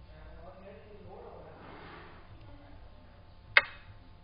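Xiangqi program's piece-move sound effect: a faint swelling noise, then one sharp click about three and a half seconds in as the cannon piece is set down on its new point.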